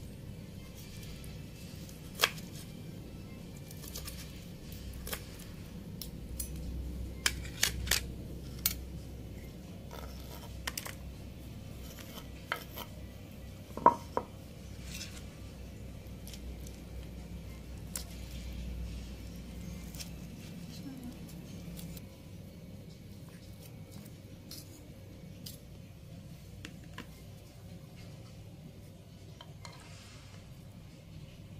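Kitchen knife cutting boiled chicken gizzards and livers on a wooden chopping board: irregular knocks and clicks of the blade on the wood and of a fork on plates, the loudest about fourteen seconds in.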